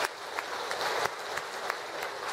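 Audience applauding to welcome a speaker to the podium: fairly light, scattered clapping.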